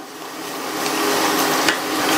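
Pirandai stems and tamarind pieces sizzling in oil in a stainless-steel kadai as a wooden spatula stirs them: a steady frying hiss that swells over the first second, with a light scrape about one and a half seconds in.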